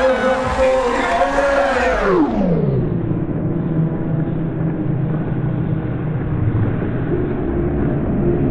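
The event's soundtrack, music with crowd noise, slowed down as a slow-motion effect. About two seconds in, the whole sound glides down in pitch and turns into a deep, muffled drone.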